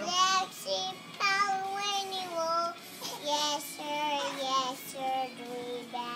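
A young girl singing a children's song unaccompanied, in short phrases of held notes with brief breaks between them; one long note runs through the second second or so.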